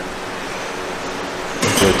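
Steady, even hiss of indoor room noise, with a single spoken word near the end.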